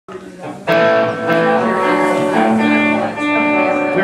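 Electric guitars playing a few loose, sustained notes that slide between pitches, starting suddenly under a second in.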